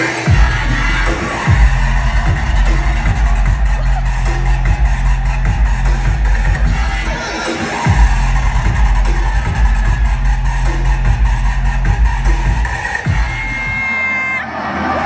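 Loud electronic dance music from a live DJ set over a club sound system, with a heavy, sustained bass line that cuts out briefly a few times and drops back in.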